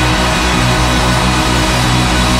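Live rock band playing an instrumental passage at full volume, with steady held bass notes under a dense wash of guitar and keyboards.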